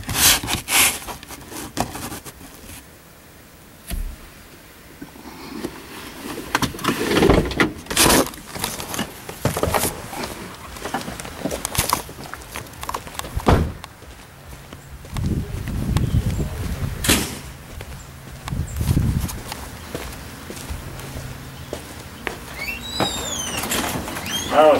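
A car door opening and thudding shut, with scattered knocks and bumps of handling and movement through the rest of the stretch, and some low indistinct sounds about two-thirds of the way in.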